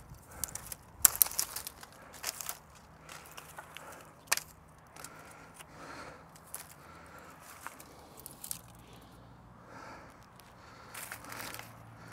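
Dry old runner-bean stalks being pulled and snapped off a hazel-stick bean frame by hand: scattered crackling and rustling, with a loud cluster of snaps about a second in, a single sharp snap about four seconds in and more crackling near the end.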